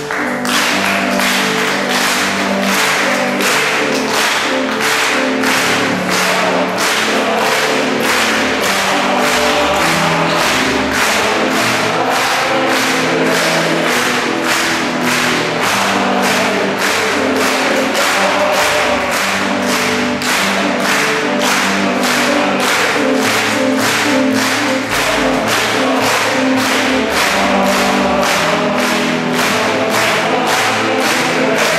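Georgian male choir singing with a string orchestra, held chords under a sharp steady beat about twice a second.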